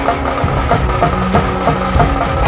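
Dance music with a hand drum beating a steady, quick rhythm, pitched melody lines running over it.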